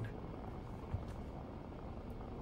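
Faint, steady low rumble of a vehicle cabin, with one soft tap about a second in.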